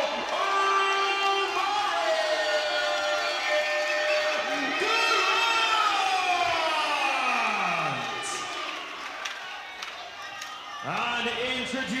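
Ring announcer calling out a boxer's name over a public-address system in long, drawn-out tones, the last one falling steeply in pitch, with a crowd cheering. The call ends about eight seconds in, leaving quieter crowd noise.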